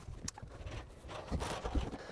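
Faint handling noise from a handheld camera being moved: soft low bumps, clustered about one and a half seconds in, and one light click near the start.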